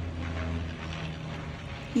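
Low, steady engine rumble of vehicles, easing a little under a second in, with faint voices in the background.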